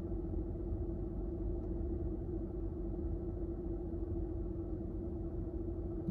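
A parked car idling, heard from inside the cabin: a steady low rumble with a constant hum.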